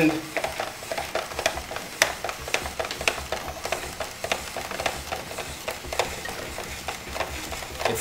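Yellow squash being spiral-cut on a hand-cranked Spirooli slicer into 5 mm noodles. The blade cutting the squash gives a continual crackle with many small, irregular clicks.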